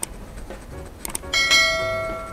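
Editing sound effects for a subscribe-button animation: short mouse-click sounds, then about a second and a half in a bright bell chime, the notification-bell cue, that strikes sharply and rings on, fading slowly.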